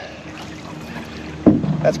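Wooden canoe paddle pulling through river water, with light wind on the microphone. A louder sudden sound comes about one and a half seconds in.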